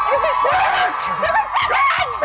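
Several people shouting and laughing excitedly at once, their voices overlapping.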